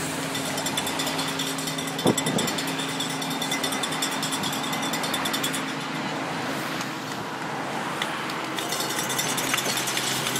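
Cars in a cycle-race convoy driving past one after another up a climb, engines running steadily. There is a sharp knock about two seconds in, and a fast high ticking for much of the time.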